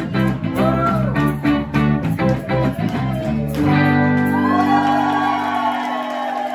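Live band of electric guitars, bass guitar and a female singer playing the last bars of a song, ending about three and a half seconds in on a held final chord with a long sung note over it.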